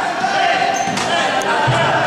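Handball bouncing a few times on a wooden sports-hall floor amid a steady echoing din of voices in the hall.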